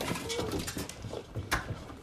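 Panicked scramble of people: scuffling, jostling and bumping with a few faint yelps, and one sharp knock about one and a half seconds in.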